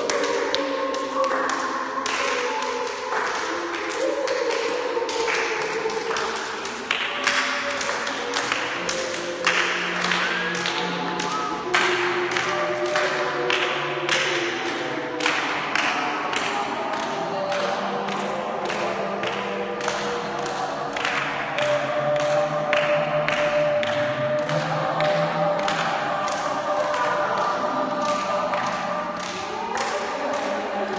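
A group of people holding sung or hummed tones at several overlapping pitches, with many sharp taps and thumps scattered irregularly through it, several a second.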